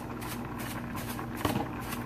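A steady low mechanical hum, with faint stirring sounds from a utensil in a pot of thick gravy.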